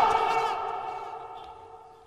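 A man's voice ringing on as a fading echo through a public-address system after his last word. A few steady pitches die away evenly over about two seconds.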